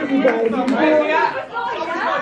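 Indistinct chatter of several overlapping voices in a large hall.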